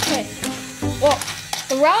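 Small battery-powered motor in the base of a Bluey Keepy Uppy game whirring as it swings the balloon arm around.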